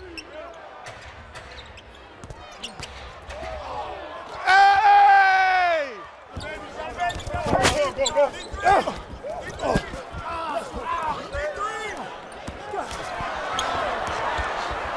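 On-court game sounds on a hardwood basketball floor: a ball being dribbled and sneakers squeaking, with one long drawn-out shout about four and a half seconds in that drops in pitch as it ends.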